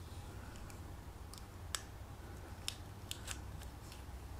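A few sharp, light clicks over a steady low hum, as a salt-soaked etching pad is worked on a stencilled steel blade to electro-etch it. The loudest click comes just before halfway, and three more follow in the next second and a half.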